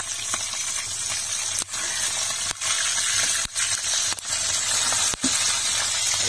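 Cornmeal-coated fish frying in a pan of hot oil: a steady, loud sizzle, with a few brief dips in level.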